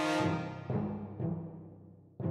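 End-credits music: deep drum strikes about every half second with sustained low tones beneath, dying away near the end.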